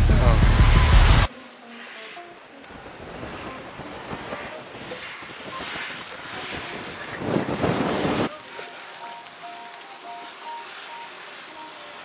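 Strong wind buffeting the microphone, cutting off abruptly about a second in. After that, quieter outdoor wind noise, which swells again briefly around seven to eight seconds in.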